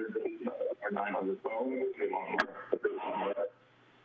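Speech heard over an open telephone line, thin and phone-quality, which council members take for a caller's TV or stream playing the meeting back with a delay. It breaks off about three and a half seconds in, leaving a low hum, with one sharp click shortly before.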